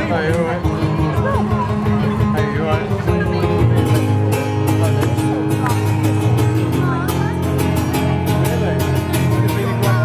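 Acoustic guitar strummed through a PA, steady chords opening a song before any singing.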